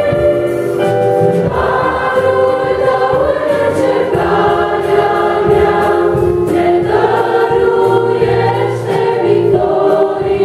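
A small church vocal group, mostly women's voices, singing a Romanian hymn in harmony over electric keyboard accompaniment. Long held chords change every two or three seconds.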